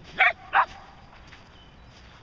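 Shetland sheepdog barking twice in quick succession: two short, loud barks near the start.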